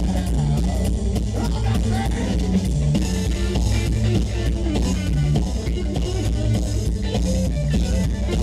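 Live rock band playing: electric guitar, bass guitar and drum kit, with a steady beat and a moving bass line.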